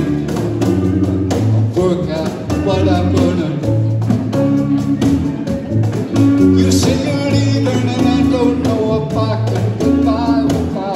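A live blues band playing: electric guitar, banjo, cajon and electric bass, with a man singing the lead.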